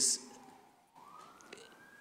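Faint emergency-vehicle siren wailing: its pitch slides slowly down, then about a second in begins a new slow rise.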